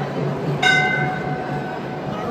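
A single horn-like tone starts suddenly about half a second in. It is loud for a moment, then holds fainter for about another second, over steady background noise.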